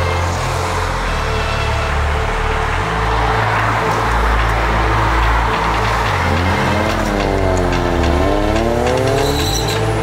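A car's engine and exhaust as it pulls away, its note rising, sagging and rising again over the last few seconds, over background music with a heavy bass line.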